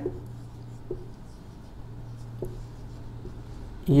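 Marker pen writing on a whiteboard: faint scratching strokes with a couple of small ticks as a word is written out, over a steady low hum.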